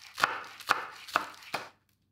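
Chef's knife chopping green onions on a wooden cutting board: four even strokes, about two a second, each ending in a sharp tap of the blade on the board.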